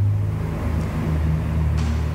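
A steady low droning hum, like a running motor, that drops slightly in pitch about halfway through.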